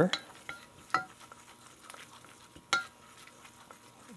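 Wooden spoon stirring a bubbling butter-and-flour roux in a stainless steel saucepan, with a faint sizzle. The spoon knocks against the pot a few times, most clearly about a second in and again near the end.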